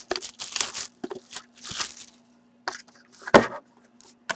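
Plastic shrink-wrap being torn and crinkled off a sealed box of hockey cards, in a run of short rustling bursts. Then a few clicks and one sharp knock about three seconds in.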